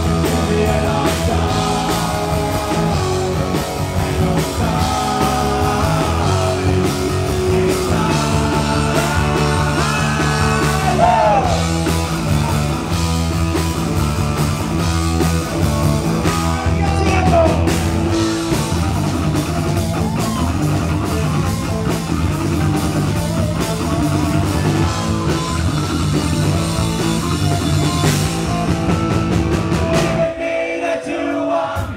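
Live rock band playing: drum kit, electric guitars and bass, with male vocals sung into the microphones.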